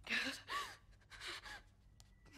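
A woman gasping for breath, about four quick, shaky breaths in two seconds, fairly faint.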